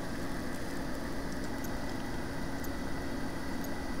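Steady background hiss with a low hum; no distinct event stands out.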